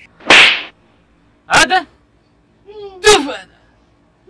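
A short, loud noisy swish, then two short shouted cries from a man's voice, about a second and a half apart.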